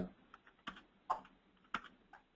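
Typing on a computer keyboard: a handful of single keystrokes at irregular intervals as a command is entered.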